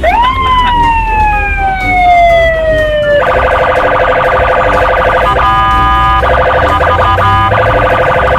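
Police car electronic siren: a long wail that rises quickly and falls slowly for about three seconds, then switches to a steady multi-tone blare broken by a few short gaps, with a new rising wail starting near the end.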